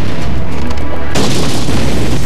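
Film explosion sound effect: a sudden boom about a second in, over a driving music score with a steady bass.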